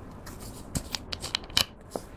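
Cap being twisted off a cosmetic squeeze tube, with the tube crinkling in the fingers: a quick run of sharp clicks and crackles in the second half.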